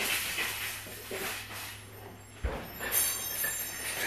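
A wire shopping cart rattling and clinking as it is pushed, over a steady low hum, with a single thump about two and a half seconds in.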